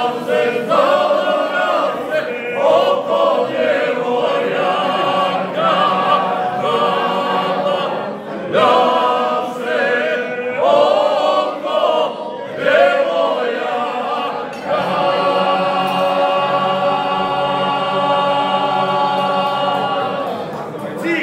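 A small group of mostly men singing a traditional Lika and Dalmatian folk song unaccompanied, in several parts under a lead voice. Short sung phrases give way, about three quarters of the way in, to one long held chord.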